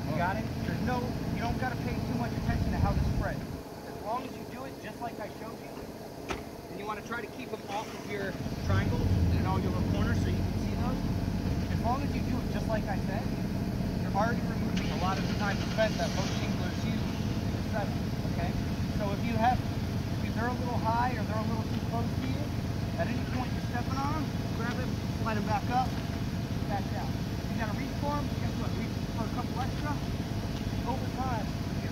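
Air compressor for the roofing nailers running steadily, cutting out about three seconds in and starting up again about five seconds later, as it cycles to keep its tank at pressure.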